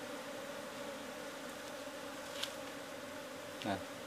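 A colony of Asian honeybees (Apis cerana) buzzing in flight, a steady hum.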